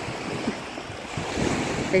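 Small waves breaking and washing up a sandy beach, a steady rush of surf that swells about halfway through, with wind buffeting the microphone.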